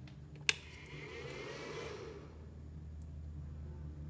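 A single sharp click about half a second in as the power switch of a Whistler power inverter is pressed to turn it on, followed by a soft whir that swells and fades over about a second, over a faint steady low hum.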